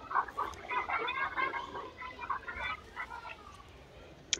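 Faint, high-pitched children's voices calling and chattering in the background, coming and going.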